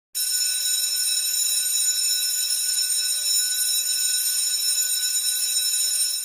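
Electric bell ringing continuously at a steady level, cutting in suddenly just after the start: a dispersal bell marking the end of the assembly.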